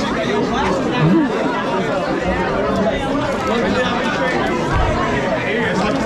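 Crowd chatter: many people talking and calling out over each other at once in a packed room.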